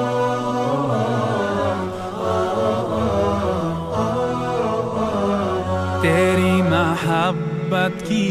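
Devotional Islamic nasheed: layered voices holding a low drone under a slow chanted melody, with a solo voice's wavering, ornamented line coming in about six seconds in.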